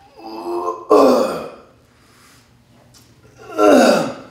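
A man's voiced exertion groans, "ooh"-like, as he pulls dumbbells back in a chest-supported row. There is one drawn-out, falling groan in the first second and a half, a quiet pause, and another near the end.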